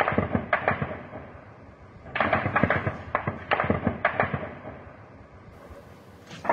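Gunfire exchanged in bursts: a few sharp shots at the start, then a longer run of about half a dozen shots from about two seconds in, each crack trailing off in an echo.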